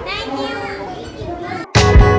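Children's voices chattering and calling out, cut off abruptly near the end and replaced by loud background music with sustained tones.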